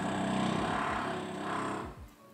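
A power tool from the building's renovation work running steadily, then cutting off suddenly at the end.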